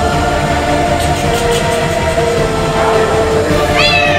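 Background music with sustained held chords. Near the end, a cat gives one short meow that rises sharply and then falls.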